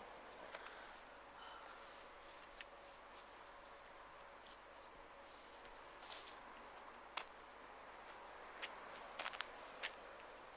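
Near silence: faint outdoor background hiss with a handful of light clicks scattered through it, the loudest about seven seconds in and near the end.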